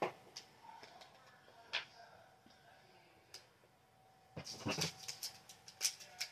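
A few light taps of small plastic bead bottles on the table, then near the end a burst of crinkling as a small plastic bag of diamond-painting drills is handled and snipped with scissors.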